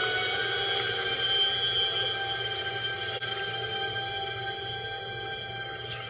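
Suspenseful horror film score: tones held together as a sustained, ominous chord, played from a television and picked up in the room.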